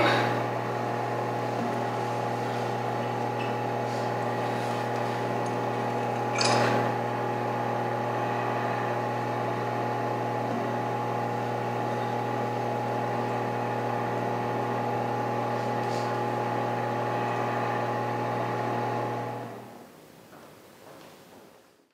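Steady electrical hum, a low buzz with a higher whine over it, holding level and fading out just before the end. There is a brief rustle about six and a half seconds in.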